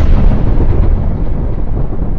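Explosion sound effect: a loud, deep rumble, the drawn-out tail of a blast, going on steadily.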